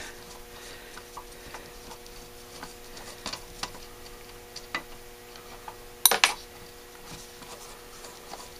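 A screwdriver and small metal parts clicking and scraping against a Holley 1904 carburetor body while the economizer is unscrewed. Light scattered ticks run throughout, and about six seconds in there is a louder sharp double clack of metal on metal.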